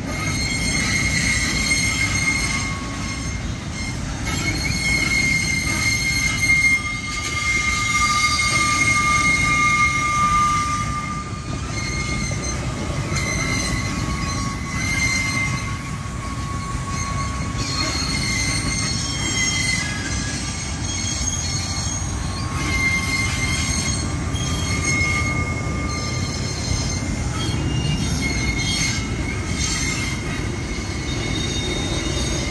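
A long freight train of covered hopper wagons rolling past with a continuous low rumble. High steady squealing tones from the wheels on the rails come and go throughout.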